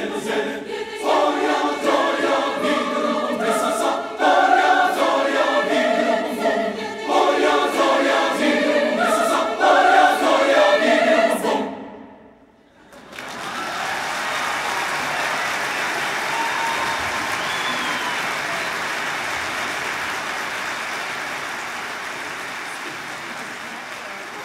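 Large mixed choir singing the final phrases of a Czech folk-song arrangement in short, punchy bursts, cutting off about halfway through. After a second of near silence, audience applause sets in and slowly fades.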